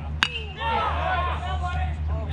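Baseball bat hitting a pitched ball: one sharp crack with a brief metallic ring, about a quarter second in, followed by spectators talking.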